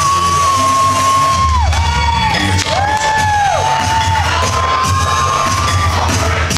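Hip hop dance-routine music played over a hall's sound system: a heavy bass beat under long held high notes that bend downward as each ends, with an audience cheering and whooping.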